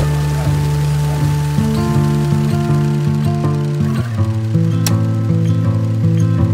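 Slow instrumental background music: sustained chords whose notes change every half second to a second.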